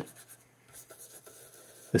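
Toothbrush bristles scrubbing cleaning foam into the textured leatherette of an Olympus OM-2N camera: faint, quick scratchy strokes.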